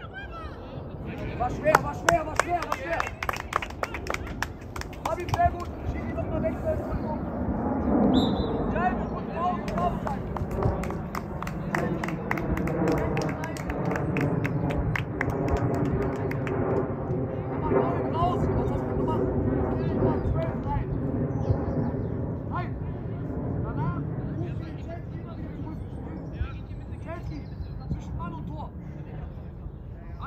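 Players and spectators shouting and calling out across a football pitch, with many sharp clicks or claps in the first half and a steady low rumble underneath.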